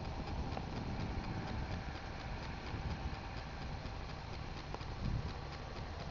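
Faint outdoor background with a run of light, evenly spaced clicks and a brief low rumble about five seconds in.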